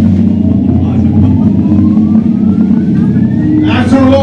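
Live band's distorted electric guitars ringing out a loud sustained low drone, with a thin tone gliding slowly upward over it. A brief wavering tone comes in near the end.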